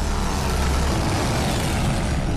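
Loud rushing noise over a deep rumble, swelling through the middle and easing near the end: a trailer transition sound effect.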